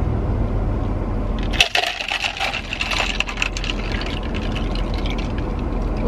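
Iced latte being poured from one plastic cup into another, starting about a second and a half in: ice cubes clattering and clicking against the plastic over the pour of the liquid.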